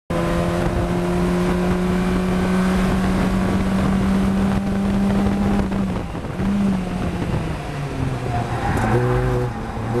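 Fun Cup race car's engine heard from inside the cockpit, held at steady high revs along a straight. About six seconds in it lifts off as the car brakes hard from about 88 to 40 mph, and the engine note then falls and changes in steps, as on downshifts into a corner.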